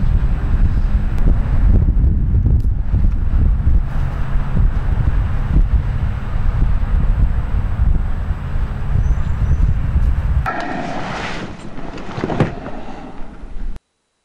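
Loud, fluctuating low rumble of wind buffeting the microphone. About ten and a half seconds in it changes abruptly to a quieter, different sound, which cuts off into silence just before the end.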